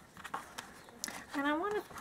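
A few soft clicks and rustles of the ribbon and the journal's chipboard cover being handled as the ruffle ribbon is pulled through the punched holes, followed by a short stretch of a woman's voice in the second half.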